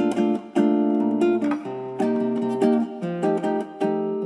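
Background music of strummed acoustic guitar chords, changing chord every half-second or so.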